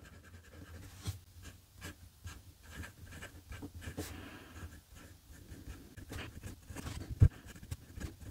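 Fountain pen stub nib scratching lightly across Rhodia paper in short, irregular strokes as words are written, with one sharper tick about seven seconds in.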